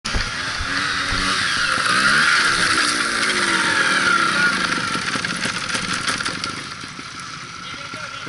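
Trials motorcycle engine running with the bike lying on its side after a fall, its pitch wavering up and down and the sound easing off over the last few seconds.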